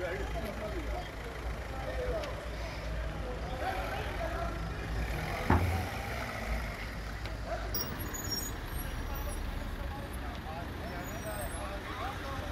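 Street ambience at a busy scene: a steady low rumble of vehicle engines with scattered distant voices. A single sharp thump about five and a half seconds in is the loudest sound.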